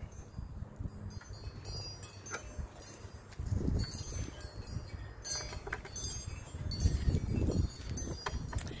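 Wind rumbling on the microphone, swelling twice, with scattered faint high ticks.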